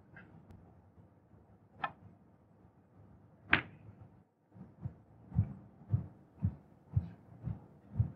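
A snooker shot: a light click of the cue tip on the cue ball, then about a second and a half later a sharper, louder click of ball striking ball. After that comes a run of soft low thumps, about two a second.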